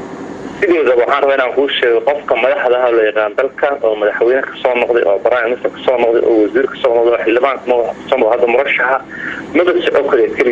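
Speech only: a man talking steadily, with brief pauses.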